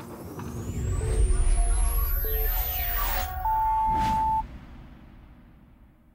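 Electronic logo sting: a long rising whoosh over a deep rumble with short synth notes, and a brighter held tone about three and a half seconds in, then fading out.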